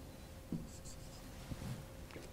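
A marker drawing a few short strokes on a whiteboard, faint, over a steady low room hum.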